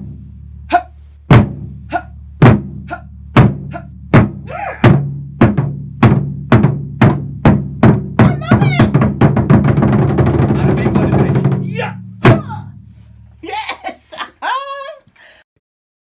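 Rope-tensioned Japanese taiko drums struck with wooden sticks by two players. The single strokes speed up into a fast roll, which ends in one last big hit about twelve seconds in. Each stroke leaves a low drum ring.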